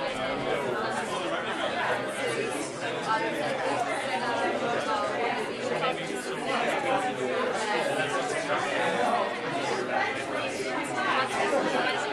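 Chatter of many overlapping conversations: a roomful of people talking at once in small groups, no single voice standing out.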